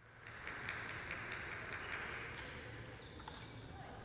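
Faint hall ambience with scattered light taps of a table tennis ball.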